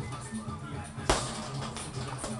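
A hard punch landing on a leather heavy bag about a second in, a sharp smack over background music playing throughout.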